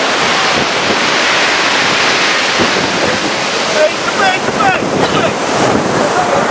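Rough sea breaking and churning against a concrete groyne, with strong wind buffeting the microphone; a steady, loud rush of surf and wind.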